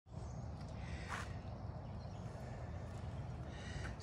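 Quiet outdoor ambience: a steady low rumble, with a short faint hiss about a second in.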